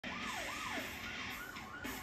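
Police car siren sounding a fast yelp, its pitch sweeping up and down about two to three times a second, over steady road and engine hiss.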